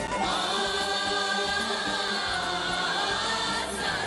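Concert music with a choir of voices singing a long held chord, which changes near the end.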